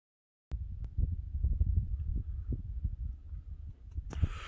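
Silence, then from about half a second in, a low, uneven rumble of wind buffeting the microphone outdoors.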